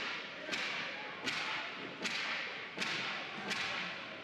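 A series of five sharp cracks about three-quarters of a second apart, each ringing on in the echo of an indoor ice rink: hockey sticks and puck hitting on the ice.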